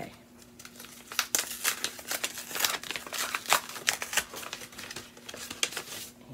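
Wrapping crinkling in quick, irregular crackles as a small advent-calendar package holding a skein of embroidery floss is unwrapped by hand. The crackling starts about a second in and thins out near the end.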